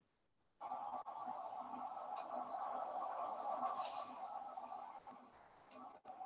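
Transport ventilator running with a steady airy hum as it pushes air into a collapsed preserved pig lung. It comes in after about half a second of silence and fades near the end.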